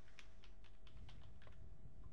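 Faint, quick keystrokes on a computer keyboard, irregular taps about five a second, as an email address is typed into a form field.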